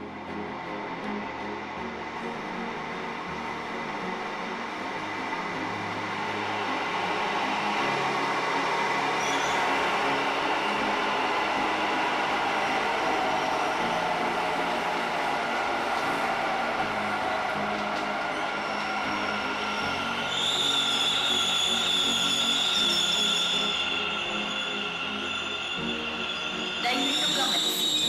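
Namma Metro train pulling into an underground station. Its rumble grows, and a motor whine falls in pitch as it slows. Near the end a high steady squeal of a few seconds comes as it brakes to a stop.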